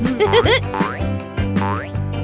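Cartoon background music with springy, boing-like sound effects: short warbling pitch bends early on and a long swooping glide near the end.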